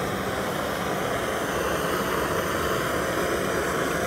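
Handheld blowtorch burning steadily, its flame held against a magnesium oxide board face: an even, unbroken hiss.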